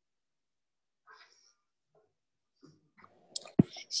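Near silence with a faint short rustle, then a few small noises and one sharp click about three and a half seconds in, just before a student's voice begins over the call audio.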